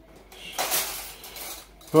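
Cutlery scraping and clinking against dishes for about a second, with a few sharp knocks.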